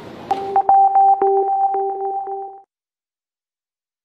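A short synthesizer music sting: two steady held notes, one low and one high, with quick clicking accents over them, lasting about two seconds and then cutting off into silence. Station background noise fades out as it begins.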